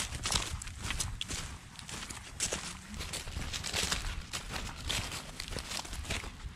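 Footsteps shuffling and rustling through a thick layer of wet fallen leaves close to the microphone, in an irregular run of crunches.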